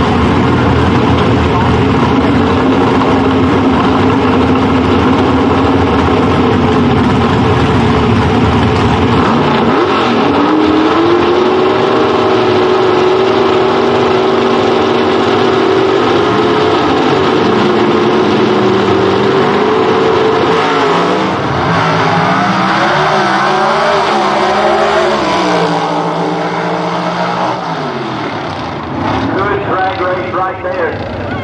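Gasser drag cars' engines running at the starting line, stepping up at about nine seconds to a steady held high rpm. About twenty seconds in they launch, and the revs climb in several sweeps, each cut short by a gear shift, before fading off down the track near the end.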